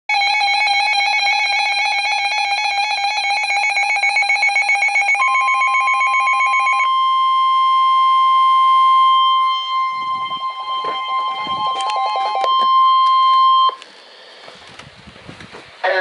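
Weather radios sounding a severe thunderstorm warning alert. A fast-pulsing, warbling alarm beep fills the first seven seconds. From about five seconds in it is overlapped by the steady NOAA Weather Radio warning alarm tone, which holds for about eight seconds, cuts off abruptly, and leaves a low hiss.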